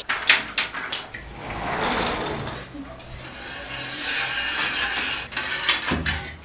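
Plastic clothes pegs clicking and clattering as laundry is pulled off a drying rack in a hurry. Clicks come thick in the first second, with two longer swells of noise about two and four seconds in.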